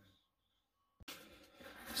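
Dead silence for about a second, then a sudden click followed by a faint, growing rustle of paper as a notepad page is turned over.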